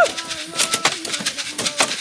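Several hand hoes striking the soil in quick, overlapping blows from a group working at once, about four strikes a second, with voices calling over them.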